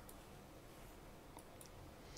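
Near silence: faint room tone with a couple of faint clicks about a second and a half in.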